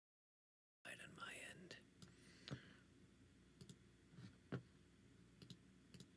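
Dead silence, then about a second in the audio cuts in with a brief faint whisper, followed by about five soft, scattered clicks over a quiet room.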